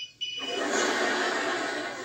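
A sitcom phone ringtone's electronic tone cuts off right at the start, followed by steady audience laughter from a laugh track, heard through a TV speaker.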